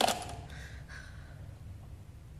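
A short, sharp plastic click as a hand handles a clear plastic container of pom-poms, then faint room tone.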